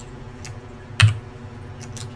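Computer keyboard keys struck a few times in separate strokes, with one louder keystroke about a second in.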